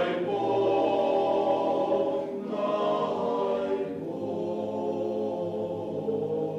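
Male choir singing a cappella in several parts, holding sustained chords. The chord shifts about two seconds in, and the singing grows softer about four seconds in.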